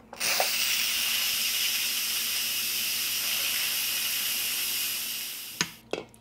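Instant Pot electric pressure cooker venting: steam hissing steadily out of the release valve as the remaining pressure is let out manually, then dying away after about five seconds.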